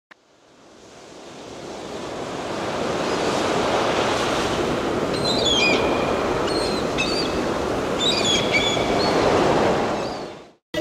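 Sea surf washing steadily, fading in over the first few seconds and fading out at the end, with a few short high chirps between about five and nine seconds in.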